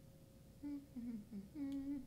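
A woman humming a short tune. About half a second in she hums a few short notes stepping down in pitch, then holds a longer, slightly higher note near the end.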